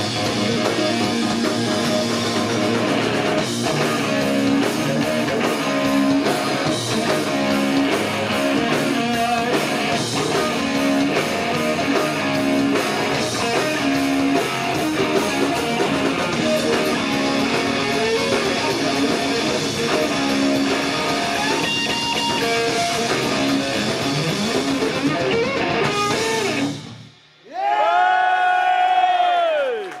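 Live rock band playing loud: distorted electric guitar, bass guitar and drum kit. The band stops abruptly near the end, followed by a few seconds of held notes that bend up and down in pitch.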